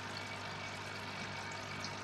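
Steady hiss of water moving in a fish tank, with a constant low hum underneath.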